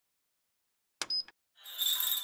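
Silence, then a brief metallic clink with a high ring about a second in, followed by a hiss with a steady high tone fading in near the end.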